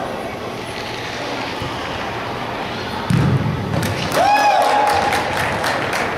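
Soccer ball struck with a dull thud on an indoor turf pitch about three seconds in. About a second later comes a long held shout, with sharp clicks and knocks from play around it.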